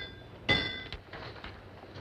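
A hammer striking iron once, about half a second in, with a short metallic ring that dies away: blacksmith work on a wagon wheel's iron rim.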